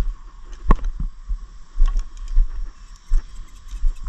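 Handling noise on a waterproof camera carried by someone walking: irregular low thumps and rubbing, with a sharp click about three-quarters of a second in and lighter clicks later, under a faint steady tone.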